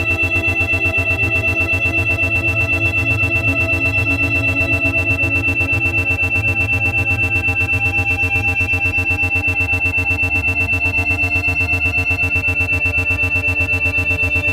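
8 Hz brainwave-entrainment audio: the sound pulses evenly about eight times a second (isochronic and monaural beats). A steady high tone sits over a soft, slowly shifting ambient synthesizer pad.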